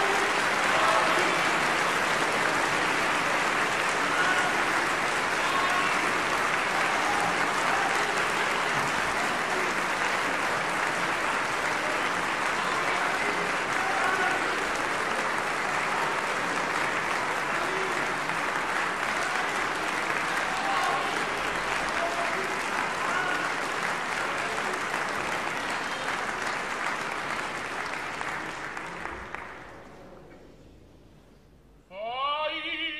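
Opera house audience applauding steadily after a number, dying away over the last couple of seconds.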